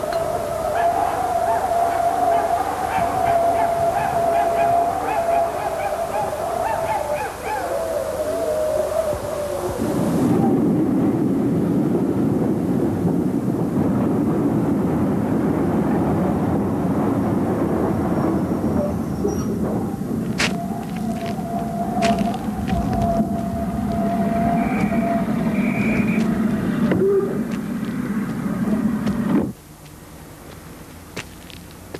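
Soundtrack of a music video's non-musical intro: a long wavering held tone over a noisy bed, switching abruptly at about ten seconds to a dense rumbling noise, with a few sharp clicks and a brief return of the held tone around twenty seconds in, then cutting off suddenly just before the end.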